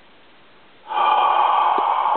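A person's long, loud, breathy exhale close to the microphone, starting suddenly about a second in and held steady, with a couple of faint clicks.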